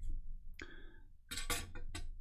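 Small metal hand tools being handled and set down: a short scrape a little after the start, then a quick cluster of light clinks and taps about one and a half seconds in.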